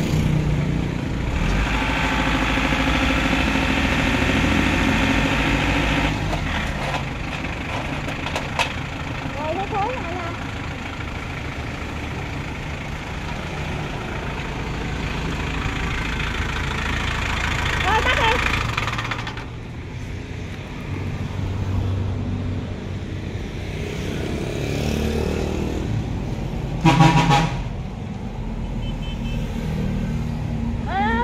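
Shibaura D28F tractor's four-cylinder diesel engine running steadily, a little louder for the first few seconds. Near the end there is one short horn toot.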